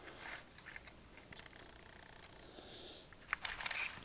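Faint handling noise from a plastic model locomotive shell held and moved close to the microphone, with a quick cluster of light clicks and taps a little over three seconds in.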